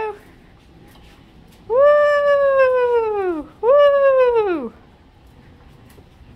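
Domestic cat meowing twice: two long, drawn-out meows, each sliding down in pitch at the end, the second shorter than the first.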